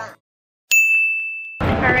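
A single bright ding: a high, steady chime that starts sharply after a moment of silence and fades over about a second. It is cut off by street traffic noise.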